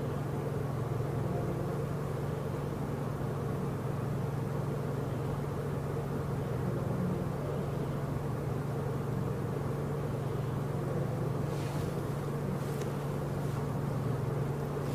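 A steady low hum runs throughout, with a few faint clicks near the end.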